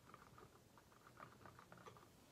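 Near silence with a scatter of faint, quick small clicks and taps.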